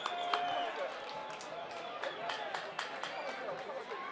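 Faint open-air football stadium ambience: distant voices and shouts from the pitch and a sparse crowd, with scattered short sharp sounds.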